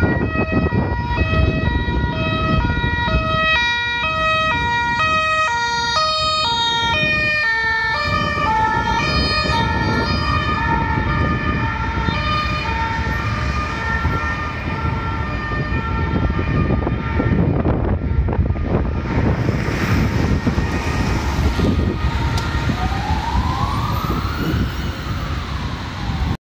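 Ambulance siren sounding a two-tone call, alternating between a high and a low note about twice a second, over steady heavy traffic noise. Near the end it switches to a single rising-and-falling wail.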